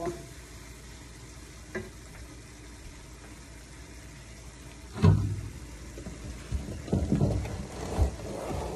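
Spiced canned-tuna mixture frying in a pan, a steady quiet sizzle. About five seconds in there is a loud thump, followed by a few more knocks.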